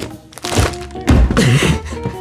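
A dull thunk and rustling as a small cardboard box is handled close to the microphone, over background music.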